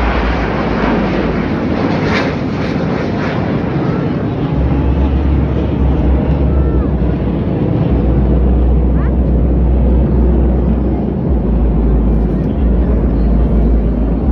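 Military fighter jets flying over in formation, a loud steady jet noise with a low rumble that grows heavier from about four and a half seconds in.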